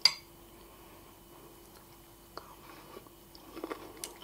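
A metal spoon clinks once against a ceramic bowl as it scoops up creamy orzo, followed by faint chewing with a few small mouth clicks.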